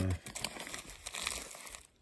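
Irregular crinkling and rustling of plastic bags and gear being handled inside a canvas day pack.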